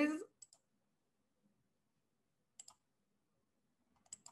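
A few faint, sharp computer clicks in pairs, heard over a video call: two about half a second in and two more near three seconds in.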